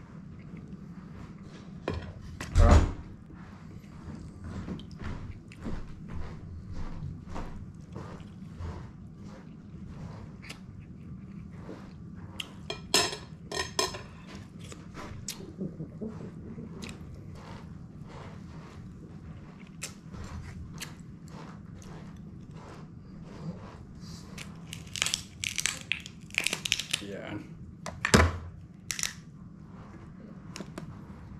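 Steamed lobster shell being cracked and pulled apart by hand close to the microphone, with chewing between: many short crackles and clicks throughout, in thicker clusters about halfway and near the end. Two loud knocks stand out, about three seconds in and near the end.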